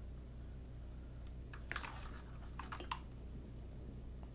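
Insulated wires being pulled and handled inside a plastic printer base: a few faint clicks and rustles, most of them between about one and three seconds in, over a steady low hum.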